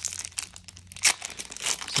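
Foil wrapper of a Flesh and Blood trading card booster pack being torn open and crinkled by hand, a dense run of sharp crackles.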